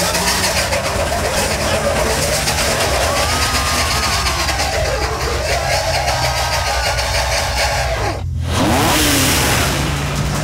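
Car engine revving hard as the car is driven wildly, its steady low note under everything. A man yells over it in the middle. About eight seconds in the sound cuts out for a moment, then the engine comes back louder.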